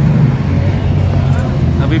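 Toyota passenger van's engine running, heard from inside the cabin as a loud, steady low drone.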